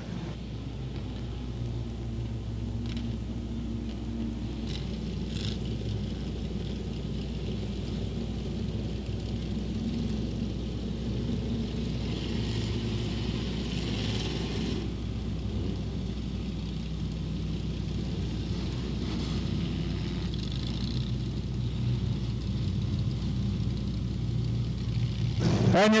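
Front-wheel-drive dirt-track race cars' engines running at low speed on a cool-down lap, a steady low rumble that grows slowly louder, with a short burst of hiss near the middle.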